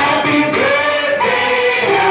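Music with a group of voices singing together, the melody moving steadily.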